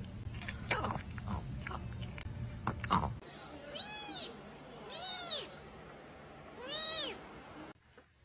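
A small kitten meowing three times, each a high cry that rises and falls, one to two seconds apart. Before that, for about three seconds, there are scattered knocks and clicks over a low hum.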